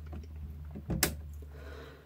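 A single sharp click about a second in, with a few fainter clicks and handling noises around it: a light switch being flicked off to black out the room.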